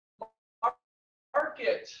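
Two brief plopping sounds about half a second apart, then a man's voice begins speaking about a second and a half in.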